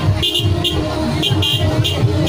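Vehicle horn tooting in about six short, quick beeps.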